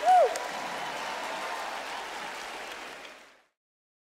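Concert audience applauding, with a brief voice call at the very start; the applause fades out about three and a half seconds in.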